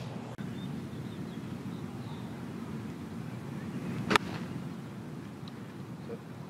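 A golf club strikes the ball once, a sharp, very brief crack about four seconds in, over a steady outdoor background hum.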